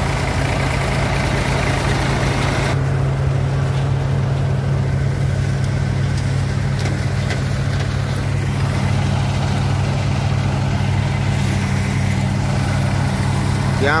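Tractor diesel engine running steadily at constant speed, driving a groundnut thresher as it works through peanut vines. The higher threshing noise drops away sharply about three seconds in, while the engine carries on unchanged.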